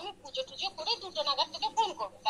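A woman's voice heard over a video call, talking with laughter in it.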